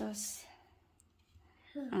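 A woman speaking a short word at the start and starting to speak again near the end, with a quiet pause between that holds one faint click.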